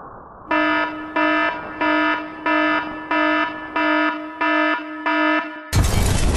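An alarm-like buzzer sounding eight evenly spaced beeps, about one and a half a second, played as the intro of a dance track; near the end the full dance music cuts in loudly with heavy bass.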